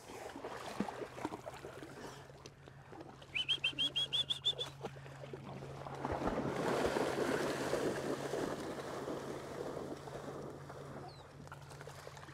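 A bird gives a quick run of about nine rising chirps, lasting just over a second, a few seconds in. After it comes a longer stretch of water splashing as dogs move through shallow floodwater.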